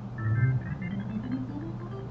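HALion 6 software organ on its vintage arch organ patch, playing back a short MIDI phrase of single notes stepping up in pitch.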